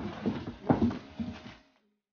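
Plastic packaging wrap crinkling and rustling in irregular crackles as wrapped parts are pulled from a cardboard box, then cutting off suddenly near the end.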